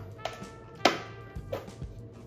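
Soft background music with a few sharp crinkles and clicks of a plastic cup-noodle cup being handled, the loudest about a second in.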